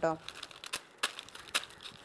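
Dry coconut palm fronds rustling and crackling as they are handled, with a few sharp, scattered snaps through the middle.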